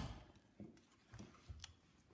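A knife severing the ball-and-socket hip joint of a deer carcass: one sharp click at the start, then a few faint, short cutting clicks.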